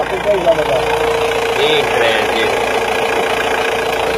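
Diesel car engine idling steadily, with a steady high hum over it. The engine is running partly on oxyhydrogen gas from an on-board water-electrolysis generator.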